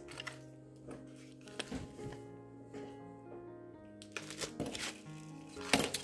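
Soft background music with long held notes, over light clicks and rustles of small sewing items being picked up in a plastic tub, thickening near the end as a plastic bag is handled.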